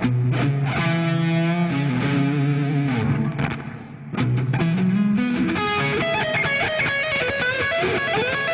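Distorted Les Paul-style electric guitar played solo: it comes in suddenly on low held notes with vibrato, dips briefly about three and a half seconds in, slides up in pitch, then breaks into fast runs of higher notes.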